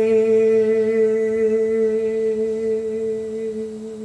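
A man's voice holding one long wordless sung note at a steady pitch, slowly growing softer and ending just at the close.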